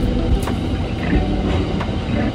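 Steady low rumble of a moving passenger train heard from inside the car, with a couple of sharp clicks from the wheels on the rails.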